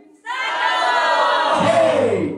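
A man's long, drawn-out hype shout that rises at the start and falls away at the end, over crowd noise. A music track with a low bass line comes in near the end.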